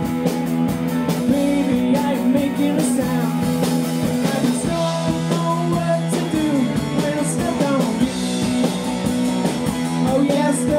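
Live rock band playing: electric guitar and drum kit.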